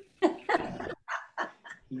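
A dog barking several times in quick succession.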